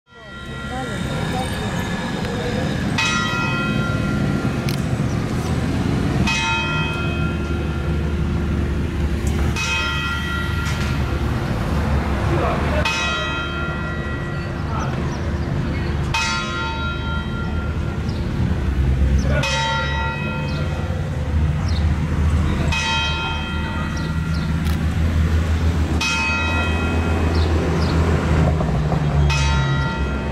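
A large bell tolling slowly, struck nine times at an even pace of about one stroke every three seconds, each stroke ringing out before the next.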